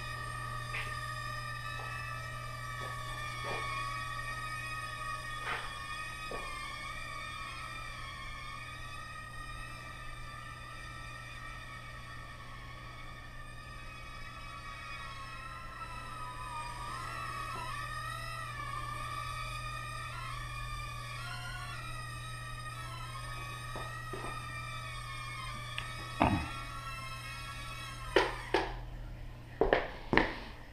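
Estes Proto X micro quadcopter in flight, its tiny motors giving a steady high-pitched whine of several tones. The pitch wavers and bends in the middle as the throttle changes. Near the end there are a few sharp knocks as it hits and comes down on the floor, and the whine cuts off.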